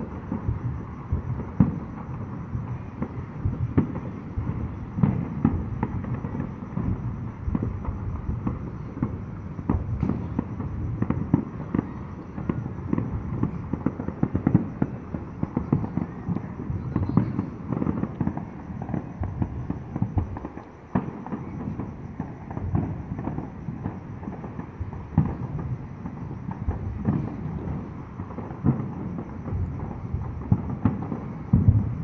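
Many fireworks going off without a break: a dense run of overlapping booms and sharp pops, one on top of another.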